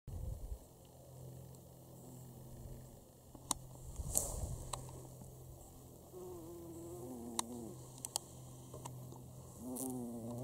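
Bumblebee buzzing close to the microphone, a low hum that wavers in pitch as it flies between flower heads, louder from about six seconds in. A few sharp clicks sound over it.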